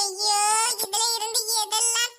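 A high-pitched, artificially raised cartoon character voice talking, the first syllable drawn out for most of a second.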